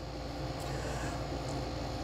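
Steady low hum and hiss of room background, with a faint steady mid-pitched tone running through it.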